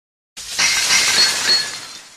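Glass-shattering sound effect: a sudden crash about a third of a second in, with bright tinkling glints, dying away over about two seconds.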